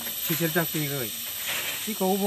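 A man speaking, over a steady high-pitched hiss.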